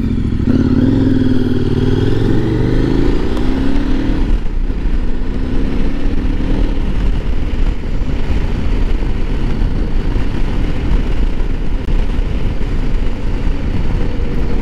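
A 2017 KTM 1090 R's V-twin engine accelerating away, its pitch rising over the first four seconds, dropping briefly at a gear change, and rising again to about seven seconds in. It then settles into steady cruising, with wind rushing over the microphone.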